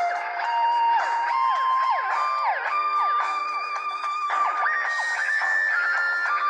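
Music: an electric guitar solo with notes sliding up and down in pitch over a held accompaniment, in the instrumental break of the song with no singing.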